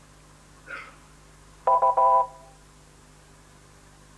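Quiz-show electronic signal: two short, loud beeps back to back about two seconds in, each a steady chord of several tones.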